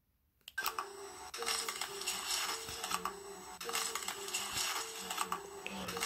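An electronic suspense sound effect: a few low held tones that change every half second or so under a tinkling, glittery hiss. It comes in about half a second in, after a dead-silent gap.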